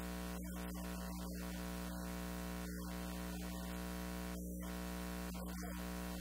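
Steady electrical hum and buzz with many overtones over a constant hiss, unchanging throughout; no voice stands out above it.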